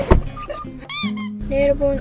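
A sharp knock, then about a second in a short high-pitched squeak that rises and falls, like an edited cartoon sound effect. Background music starts right after it.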